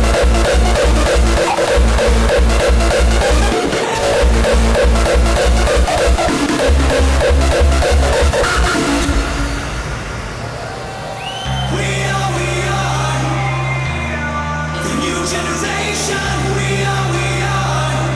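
Hardcore techno DJ set: a fast, steady kick drum with heavy bass runs until about nine seconds in, then the kick drops out into a breakdown of long held bass and synth chords.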